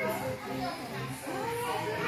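Children's voices, talking and calling out while they play.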